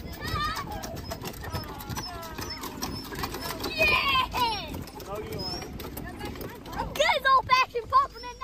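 Children's and adults' voices chattering and calling out over outdoor background noise, with a child's high-pitched voice about four seconds in and a burst of louder shouts about seven seconds in.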